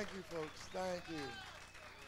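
Speech only: a man talking over the stage PA between songs, the words not made out.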